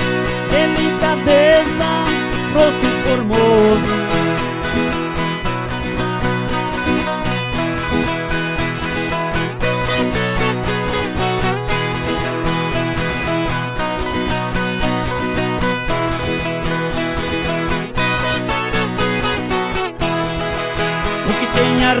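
Two violas caipiras (ten-string Brazilian guitars) playing an instrumental interlude of a sertanejo raiz song, over a steady, even beat.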